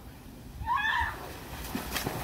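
A short high-pitched squeal about halfway through, then a splash into pool water near the end as a body hits the surface.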